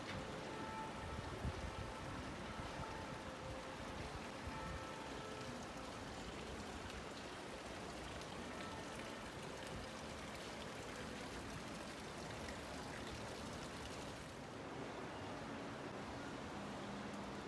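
Water from a stone street fountain's spouts splashing steadily into its basin, a continuous rushing patter that thins near the end.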